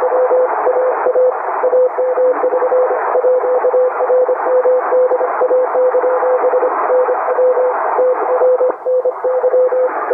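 Morse code (CW) on an HF amateur radio transceiver: a single steady tone keyed in quick dots and dashes over continuous band hiss.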